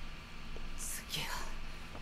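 A quiet, breathy human voice: a short hiss, then a falling breath about a second in, with no clearly voiced words.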